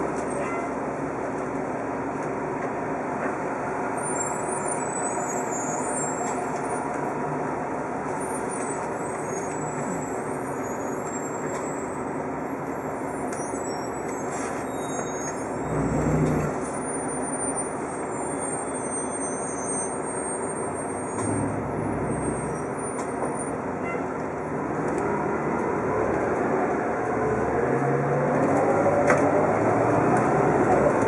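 Orion V transit bus heard from inside the cabin: its diesel engine runs with a steady drone while standing at a stop, then over the last few seconds the bus pulls away and the engine and drivetrain pitch rises and grows louder. A brief low thud sounds about halfway through.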